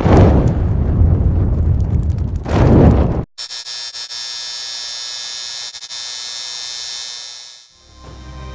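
Cinematic logo-intro sound effects: a deep boom with a low rumble, swelling into a second hit about two and a half seconds in, cut off abruptly about three seconds in. Then a steady, bright electric buzz that fades away near the end.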